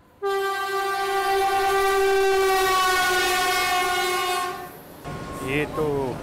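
Locomotive horn sounding one long, steady blast of about four and a half seconds as a train approaches. A man speaks briefly near the end.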